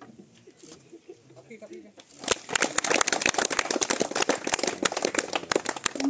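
A small group clapping, starting about two seconds in and keeping on, after a couple of seconds of faint murmuring voices.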